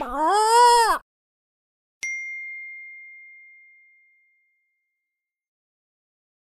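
The drawn-out last note of a rooster's crow, its pitch rising then falling over about a second. About a second later a single high bell-like ding rings out and fades away over about two seconds.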